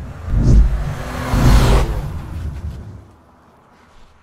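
Logo-sting sound design: two deep booms about a second apart, the second under a rising whoosh that peaks near two seconds in, then everything fades away by three seconds.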